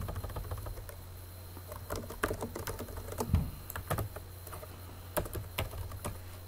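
Computer keyboard keys clicking as a router command is typed, in scattered keystrokes and short quick runs, over a steady low hum.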